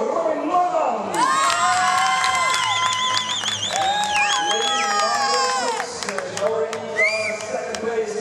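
Spectators cheering and shouting, with many high-pitched calls, some of them wavering, greeting a finalist's introduction; the cheer rises about a second in and dies down after about six seconds, with one more short call near the end.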